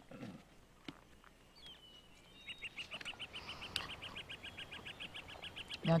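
A bird's rapid trill of short high chirps, about ten a second, beginning about halfway through and continuing to the end. Before it, the outdoor background is faint, with a thin high whistle and a few small clicks.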